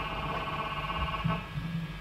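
Low steady electrical hum from live guitar amplifiers idling between songs, with a faint held tone that fades out about one and a half seconds in.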